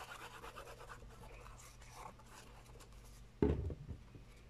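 Squeeze bottle of liquid craft glue, its applicator tip scratching and rubbing across paper as glue is spread on a cardstock backing piece. A single thump about three and a half seconds in.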